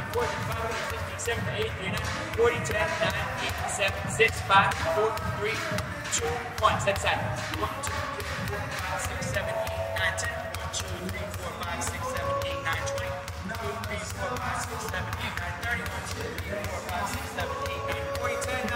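Basketball dribbled low and fast on a hardwood gym floor, a quick run of sharp bounces, with music playing over it.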